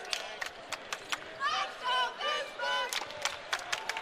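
Arena court sound during play: a basketball being dribbled on a hardwood floor in a string of sharp bounces, with players and crowd calling out in the background.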